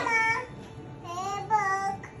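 A young child's high-pitched, sing-song voice: a drawn-out note at the start, then two short sung calls about a second in and again half a second later.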